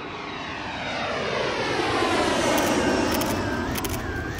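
A fixed-wing aircraft flying past, its engine noise growing louder toward a peak about three seconds in, with a sweeping hiss that falls and then rises again as it passes.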